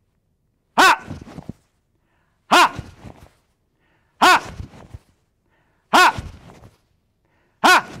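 A man's sharp martial-arts shout, "Ha!" (a kihap), five times at an even pace of about one every 1.7 seconds, each marking the second punch of a one-two punch drill. Each shout rises and falls in pitch and trails off briefly.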